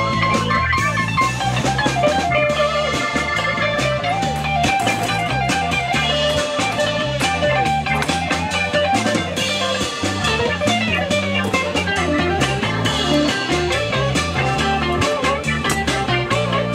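A live band playing on electric guitar, upright bass, keyboard and drum kit, amplified through PA speakers.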